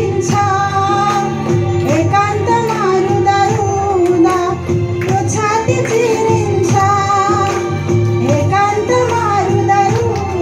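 A woman singing a Nepali Christian song into a microphone over accompanying music with a steady beat.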